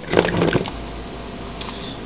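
A brief scrape and rustle of handling as a multimeter probe is pressed against a copper jumper-cable clamp, followed by low steady room noise.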